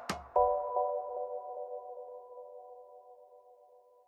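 End of an electronic music track: a last beat, then a single held chord of a few steady tones that slowly fades out.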